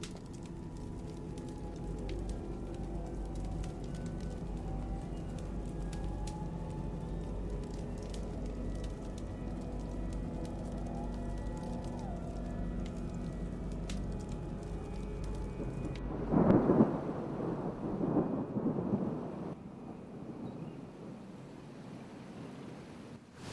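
Film soundtrack: a low steady drone with faint ticks, then thunder rolling in two loud swells about sixteen seconds in, settling into a quieter hiss of rain.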